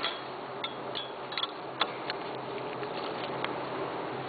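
A few short, sharp metallic clicks in the first two seconds: an adjustable wrench gripping and twisting a plug-welded sheet-metal test coupon clamped in a steel bench vise. A steady low hum runs underneath.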